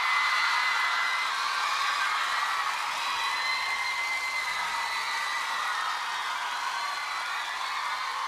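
Studio audience cheering and screaming once the song has ended: a steady crowd noise with long, high-pitched screams held over it.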